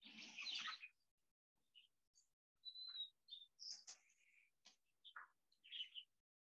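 Backyard chickens giving faint, short chirps and clucks, scattered through the second half, after a brief soft noise right at the start.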